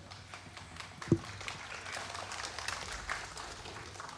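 Quiet concert-hall stage and audience noise between songs: scattered soft clicks and taps, with one short low pitched sound about a second in.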